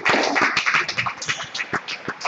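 A small crowd of spectators clapping at the end of a squash rally. There is a dense spell of claps at first, thinning to scattered claps.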